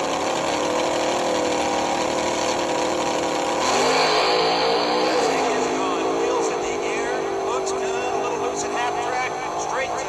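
Recorded drag-racing funny car engine played through a toy display base's small built-in speaker. It runs steadily, revs up louder about four seconds in with its pitch wavering for a couple of seconds, then settles back to a steady run.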